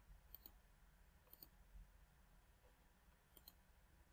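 Near silence with faint computer mouse clicks: three quick double clicks, about half a second, one and a half seconds and three and a half seconds in.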